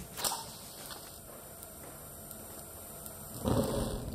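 Gas stove burner being lit: a click just after the start, a faint steady hiss, then a loud whoosh as the gas catches about three and a half seconds in.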